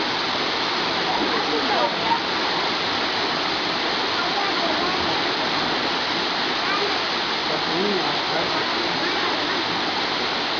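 Waterfall pouring into a rock pool, a steady rushing noise of falling water.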